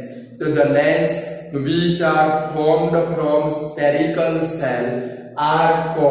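A man's voice in long, drawn-out phrases, about a second each, with short breaks between them, like a slow recitation.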